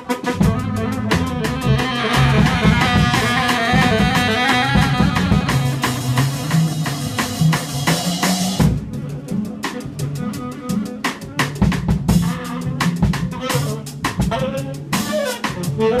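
Live improvised jazz on saxophone, upright bass and drum kit, with the drums busy throughout under a walking low bass line. A bright, dense upper layer fills the first half and drops away suddenly a little past halfway, leaving bass and drums to carry on.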